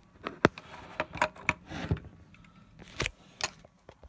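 Handling noise from a metal lens mount adapter being picked up and moved over paper packaging: a run of sharp clicks and light knocks at irregular intervals, with some rustling between.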